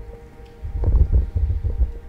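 Microphone handling noise: a run of low thuds and rumbles, about half a second to two seconds in, as a handheld microphone is passed to the next speaker.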